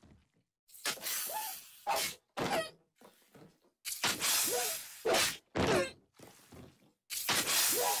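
Cartoon sound effect of a bowl shattering, chopped into a rapid string of short, loud bursts about half a second apart, each a crash of breaking crockery with a brief pitched cry in it.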